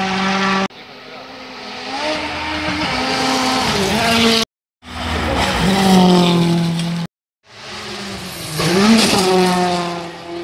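Rally cars flat out on a gravel stage, their engines climbing in pitch and dropping at each gear change as they pass. The sound is spliced from separate passes: it cuts hard about a second in, and drops to dead silence twice, about four and a half and seven seconds in, before the next car comes on.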